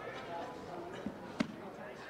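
Indistinct talk from spectators in a hall, with a soft knock about a second in and a sharper, louder thump just after.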